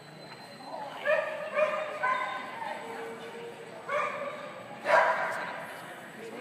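A dog barking in short, high-pitched barks, about five of them: three in quick succession about a second in, then two more near the end, the last the loudest.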